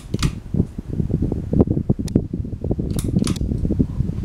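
Harbor Breeze ceiling fan running, the air from its blades buffeting the microphone in a rapid low flutter. Two pairs of sharp clicks, one at the start and one about three seconds in, from the light kit's pull-chain switch turning the light on and off.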